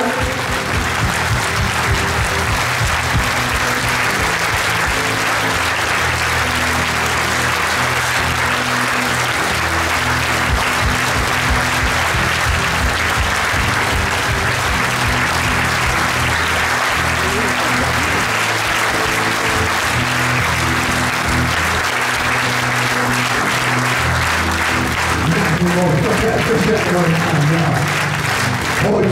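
A large crowd applauding steadily while music with a low, repeating bass line plays underneath.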